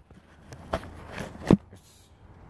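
A few soft knocks and scuffs from someone moving about and handling things, the sharpest knock about one and a half seconds in.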